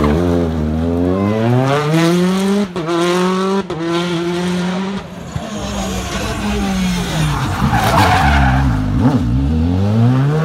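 Two rally cars take a tarmac hairpin one after the other. First a Citroën DS3 accelerates hard out of the bend, its engine note climbing steeply, with quick breaks at the gear changes. About six seconds later a Škoda Fabia R5 arrives: a burst of tyre scrub and falling revs as it brakes and downshifts for the hairpin, then the note climbs again as it powers out near the end.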